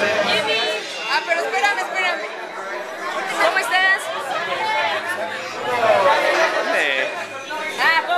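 Several people talking over one another at close range: lively, overlapping chatter.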